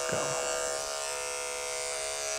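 Andis electric dog clipper with a #30 blade running steadily with a constant buzz, its blade being worked into matted fur between a dog's paw pads.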